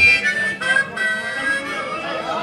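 Blues harmonica playing a few held notes that bend slightly in pitch.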